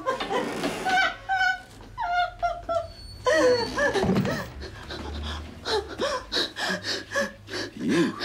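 A terrified woman whimpering in short, high, broken cries, then breathing in quick ragged gasps over the last few seconds.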